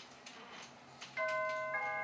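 Doorbell chime ringing its two notes, ding then dong, about a second in, the second note ringing on.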